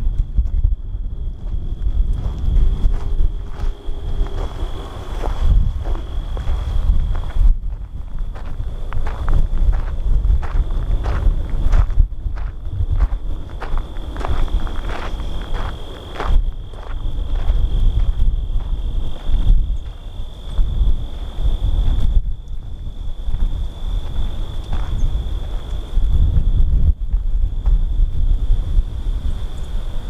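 Footsteps through dry grass and gravel, an uneven run of crunches and rustles, over a low rumble of wind buffeting the microphone. A steady high, thin tone sits behind.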